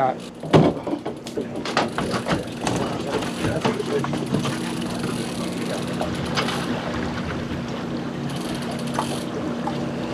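Boat's outboard motor running with a steady low hum, with a few knocks and rattles in the first couple of seconds.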